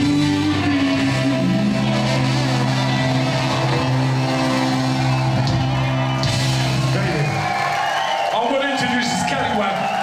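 Live ska band with saxophone and trombone holding a final sustained chord over a low bass note, which ends about seven seconds in. The crowd then cheers and shouts.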